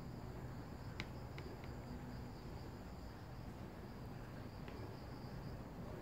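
Faint, steady high-pitched insect drone, with a higher thin tone that drops out about halfway, over a low background hum. A few faint ticks come about a second in and once more near the end.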